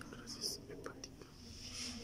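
Hushed whispering, with a few faint clicks.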